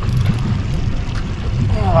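Steady low rumble of wind buffeting the microphone on an open boat, with a man's short cry near the end.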